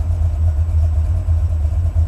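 Buick 455 Stage-1 V8 idling with a steady, deep low rumble, heard from inside the car.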